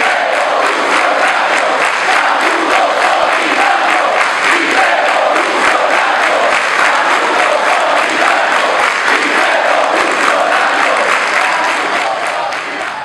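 Sustained applause from a large crowd in a reverberant hall, with many voices chanting and calling over the clapping, steady and loud throughout.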